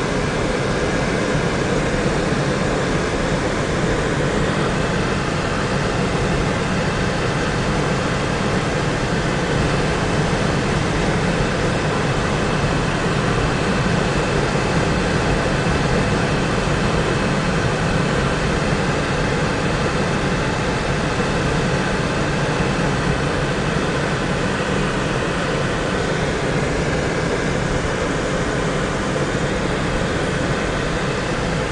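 Steady engine and tyre noise heard from inside the cabin of a car driving along a paved highway.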